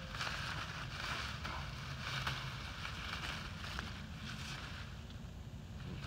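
Blackberry leaves and canes rustling as a hand pushes in among them, a steady noisy hiss with a few faint ticks.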